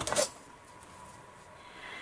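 A brief rustle at the start, then quiet handling of a metal ruler and paper on a craft table as the ruler is picked up and laid across a collage page, with a faint steady hum underneath.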